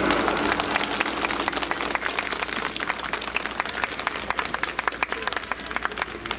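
Audience applause: many hands clapping in dense, irregular claps. The backing music ends in the first two seconds.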